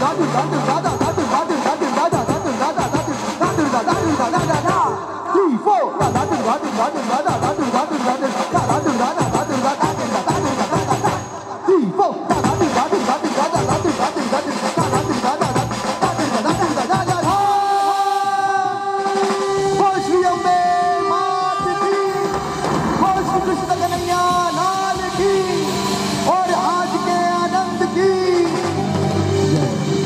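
Live band music with fast drumming on a drum kit and percussion under sung or melodic lines. About two-thirds of the way through, the drumming thins and long held melodic notes take over.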